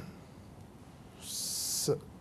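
A man's breath picked up close on a lapel microphone: a short hiss lasting under a second, about halfway through, before he starts to speak again.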